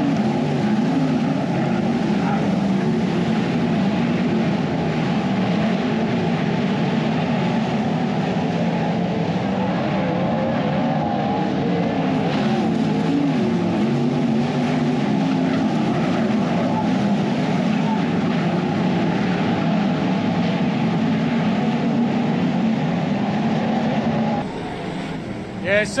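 A field of winged sprint cars racing on a dirt oval, several V8 engines running hard at once, their pitches overlapping and rising and falling as the cars go round the track. The sound drops away shortly before the end.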